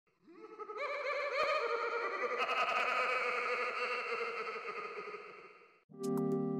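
Layered, warbling tones that build up over the first couple of seconds and then fade out just before the end: an intro sound effect.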